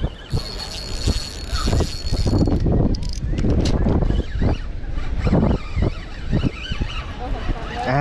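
Spinning reel whirring for about two seconds near the start while a hooked Spanish mackerel is fought on the rod, then reeling, over a steady rumble of wind on the microphone.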